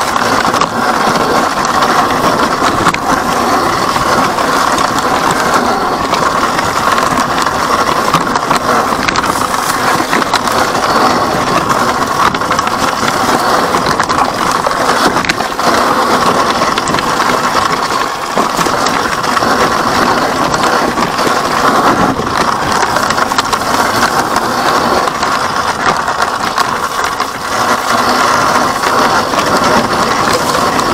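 Electric dirt bike ridden over a rocky trail: tyres crunching over loose stones and the bike rattling, a steady loud noise.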